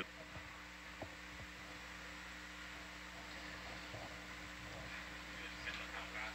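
Faint steady hiss with a low electrical hum on the control-room audio feed, with a few faint ticks.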